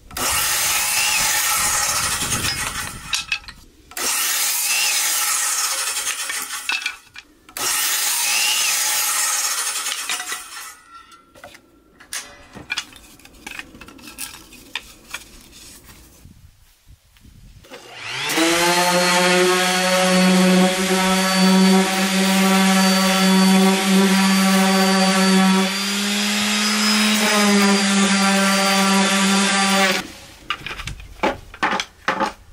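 Electric miter saw making three crosscuts through wood boards, each cut lasting about three seconds, with quieter clatter between them. About eighteen seconds in, a random orbital sander starts up and runs with a steady pitched hum.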